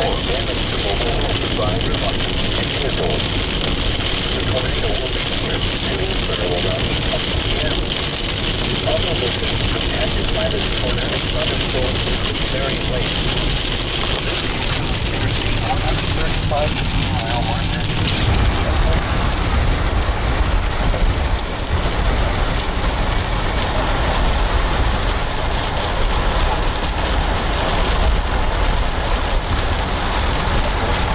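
Rain on a moving vehicle mixed with road noise, heard from inside the vehicle. About two thirds of the way in, the low rumble grows heavier.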